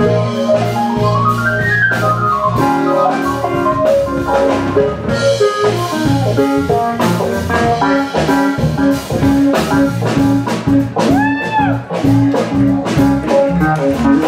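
Live jazz-funk band playing: electric bass line, drum kit and a Korg Kronos keyboard, with a lead line that bends up and down in pitch.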